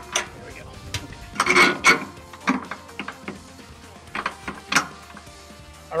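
Steel carriage bolts being pushed by hand through a steel jack bracket: a few scattered metallic clinks and rattles, the loudest around a second and a half in, over quiet background music.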